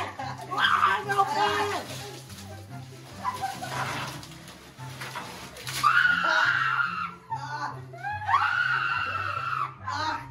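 Two long, held screams, about six and eight and a half seconds in, from a boy reacting as ice is dumped over his bare feet, over background music with a steady bassline.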